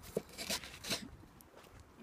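Camera handling noise: a few short, soft rustles and knocks, about three in the first second, as the camera is moved about by hand.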